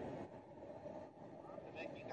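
Faint, steady low background rumble, with no distinct event.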